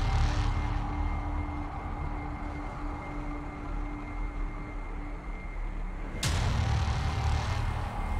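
Cinematic logo-reveal sound design: a deep, steady rumble with a faint held tone over it, and a sudden whooshing hit about six seconds in.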